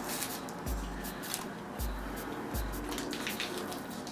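Crinkling and tearing of a small foil-and-paper alcohol swab packet being opened by hand, in many short irregular crackles, over background music with a deep beat about once a second.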